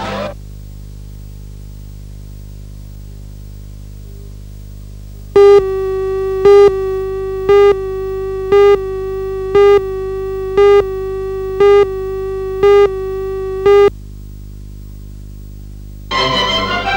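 Videotape countdown leader: a steady electronic tone with a louder short beep once a second, nine beeps in all, which starts about five seconds in and cuts off about eight seconds later. A low electrical hum runs underneath, heard alone before and after the tone.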